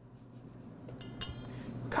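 Hands rubbing and patting through flour in a stainless steel mixing bowl: a soft, low scraping rustle against the metal that grows a little louder.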